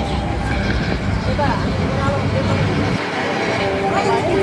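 Street noise: people's voices over a low rumble of traffic, the rumble dropping away about three seconds in.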